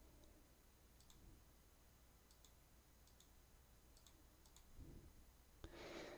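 Near silence broken by several faint, scattered clicks of a computer mouse.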